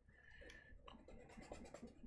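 Faint scratching of a paintbrush stroking across paper.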